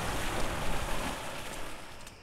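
Steady outdoor noise of wind rumbling on the microphone by open water, with no distinct events. It fades near the end.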